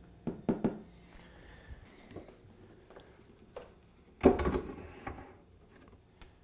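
Door handling: two sharp clicks, then a loud thump a little after four seconds in.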